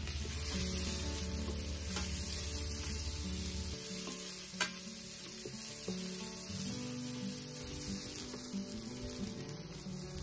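Sliced red onion sizzling in hot ghee in the stainless steel inner pot of an Instant Pot on sauté mode, a steady frying hiss, while a spatula stirs it, tapping the pot a couple of times.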